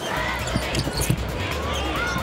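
Basketball dribbled on a hardwood court during live play, with short high sneaker squeaks over steady arena crowd noise.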